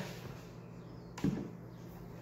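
A single sharp plastic click about a second in as the domed lid of a plastic aroma diffuser is lifted off, over faint room tone.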